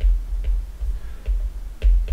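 Stylus tapping on a tablet while handwriting: short, uneven clicks about two a second, each with a dull low knock.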